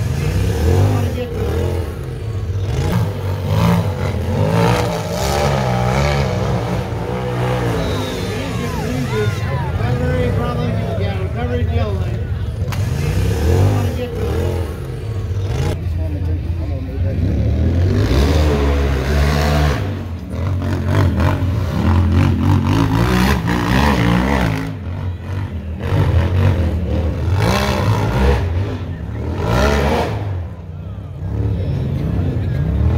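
A UTV engine revving hard and unevenly, rising and falling again and again as the side-by-side climbs a rock slope, with occasional clatter and knocks. Spectators talk and shout over it.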